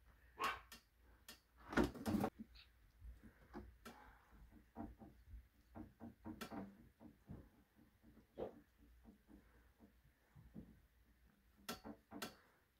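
Scattered soft clicks and taps of an electronic keyboard's plastic keys under a kitten's paws as she steps and paws across them, with a louder clatter about two seconds in.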